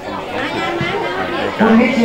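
Speech only: a man speaking Thai, with the chatter of other people behind him.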